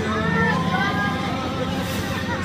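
Voices and chatter of people riding a turning carousel, over a steady background rumble, with a held low note dying away in the first second.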